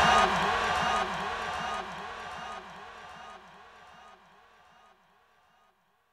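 A man's voice with crowd noise behind it, repeated by a delay echo that drops in level in even steps about every 0.8 s until it dies away almost six seconds in.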